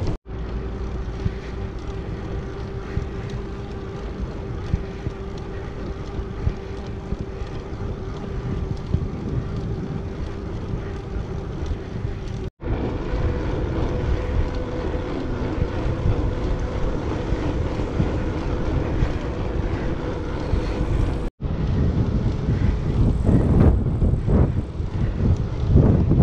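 Wind rushing over a bicycle-mounted action camera's microphone while riding, with a faint steady hum from the bicycle's tyres rolling on the path. The hum changes pitch after each break in the sound, and the wind comes in stronger gusts near the end.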